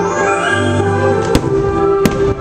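Fireworks show: aerial shells and fountain fireworks going off over orchestral show music, with one sharp bang about two-thirds of the way through.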